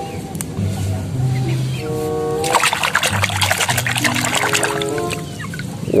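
Water splashing and sloshing in a plastic basin as a plastic toy is swished through it, from about two and a half seconds in for a couple of seconds, over light background music.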